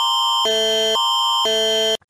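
Canadian Alert Ready emergency alert attention signal: two chord-like groups of steady electronic tones alternating about every half second at an even level, cutting off suddenly at the end before the alert message.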